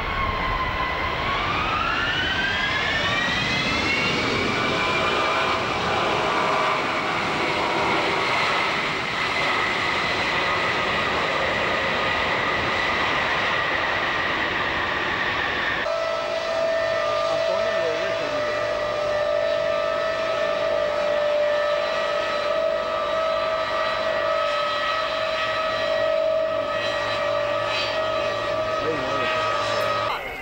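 Lockheed C-5 Galaxy's TF39 turbofan engines whining as they spool up: the pitch dips briefly, rises over a few seconds, then holds high and slowly sinks. About halfway through the sound cuts to a steadier jet-engine whine at a lower pitch.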